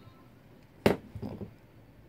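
A single sharp click a little under a second in, then a faint voice briefly, over a quiet room.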